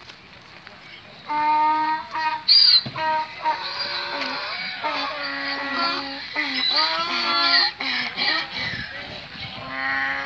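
Donkeys braying loudly: a run of long, drawn-out calls that overlap one another, starting about a second in, with high squealing parts among the low honks.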